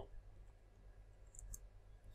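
Near silence, with a few faint clicks of computer keys about one and a half seconds in as a number is typed into a field.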